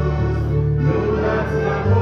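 A Christian song: voices singing together as a choir over steady instrumental accompaniment.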